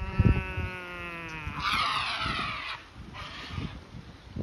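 A man's long drawn-out yell, held on one slowly falling note and then breaking into a louder, rough, raspy shout that ends a little under three seconds in. A low thump comes near the start.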